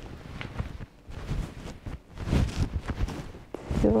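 Cloth rustling and bumping against the microphone as a crocheted shawl is wrapped around the neck and adjusted: irregular scrapes and low thuds, heaviest about halfway through.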